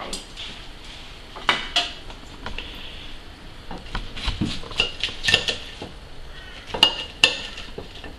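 Metal tongs and a knife clinking and scraping on a ceramic plate as a deep-fried battered fish fillet is set down and cut open: a handful of sharp, separate clinks.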